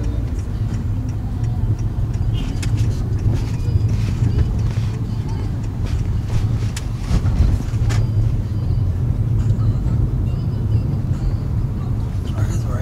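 Steady low rumble of road and engine noise inside a moving car's cabin, with scattered light clicks and knocks between about two and eight seconds in.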